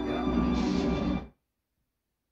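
Horror film's opening title music playing from a television, cutting off suddenly just over a second in.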